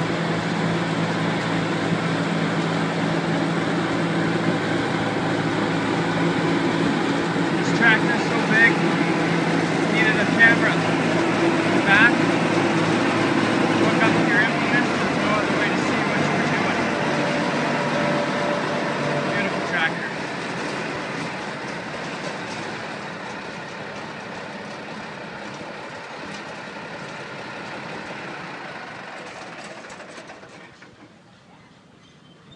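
Large diesel tractor engine idling steadily. Its tone fades out about halfway through and the overall sound dies down toward the end. A few short high squeaks come in the middle.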